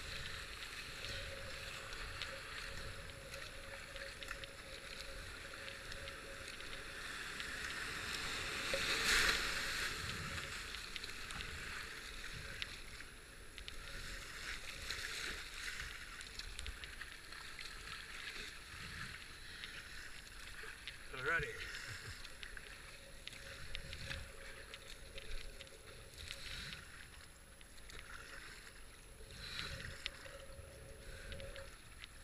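Whitewater rapids rushing around a kayak as it is paddled through, with paddle splashes. The water noise swells to its loudest about nine seconds in.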